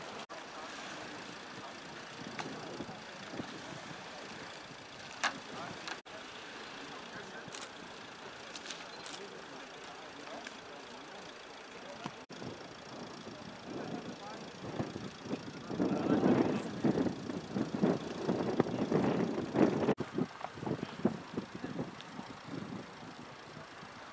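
Outdoor ambience with a steady background noise and voices of people talking, loudest for several seconds in the second half. The sound breaks off briefly three times.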